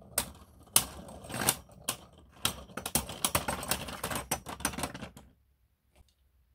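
Two Beyblade Burst spinning tops clacking against each other and rattling on a plastic stadium floor. Scattered sharp clacks build into a fast, dense clatter that stops suddenly about five seconds in as the tops lose spin and come to rest.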